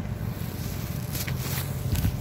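Steady low outdoor rumble, with a few faint brief scrapes a little over a second in.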